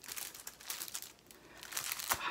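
Plastic comic-book sleeve crinkling as a bagged comic is handled and swapped for the next one: a dense run of rustling crackles.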